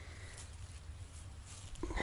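Faint outdoor ambience: a low rumble of wind on the microphone with a few soft ticks.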